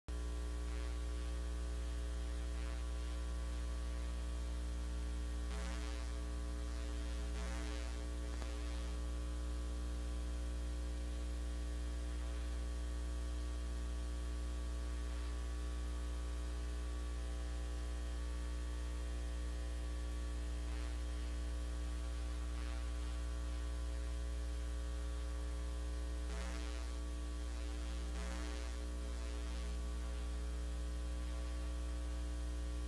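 Steady electrical mains hum on the audio line: a strong low drone with a stack of steady higher tones above it. A few faint, brief noises come and go about six to eight seconds in and again near the end.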